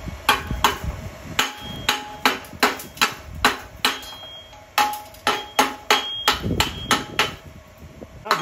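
A steel chipping hammer chipping slag off fresh stick welds on a steel plate: a quick, uneven run of sharp metallic strikes, about two to three a second, with the plate ringing briefly after each.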